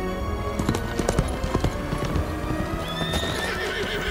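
Horse hooves clattering on hard ground in a quick run of knocks, and a horse neighing about three seconds in, over film score music.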